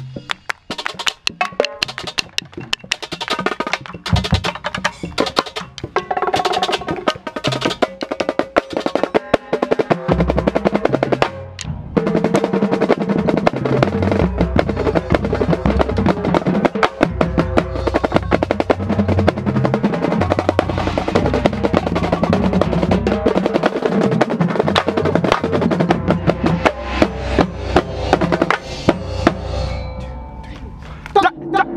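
A high school marching drumline playing a rehearsal exercise together, heard from the snare line, with the snare drum closest and busy sticking throughout. The playing is lighter for the first several seconds, breaks off briefly at about eleven seconds, then comes back fuller and louder with deep bass drum strokes until it stops at the end.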